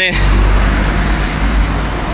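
Street traffic: car engines running close by with road noise, a steady low engine hum under it.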